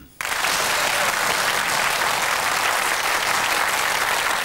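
Studio audience applauding, breaking out abruptly and holding steady.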